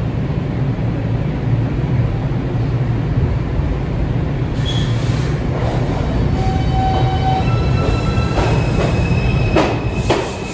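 A New York City Subway (4) express train of R142-family cars starting to pull out of the station: a steady low rumble, with thin high whining tones from the motors coming in over the second half as it gets moving.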